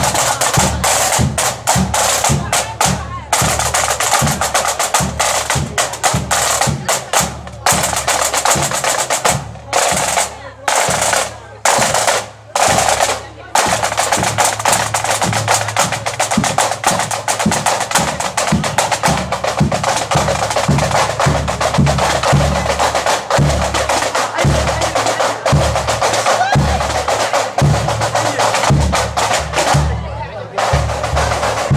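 Marching band snare drums rolling and a bass drum beating a march rhythm, with a few brief breaks about ten to thirteen seconds in.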